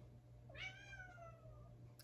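A pet cat meows once: a single faint, drawn-out meow, about a second long, that starts about half a second in and falls in pitch.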